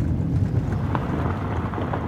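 In-cab road noise of a Jeep driving on a gravel road: a steady low rumble of engine and tyres on the gravel, with a few light ticks.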